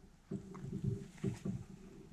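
Horse nickering: a low call made of a quick string of short pulses, starting shortly after the start and lasting about a second and a half.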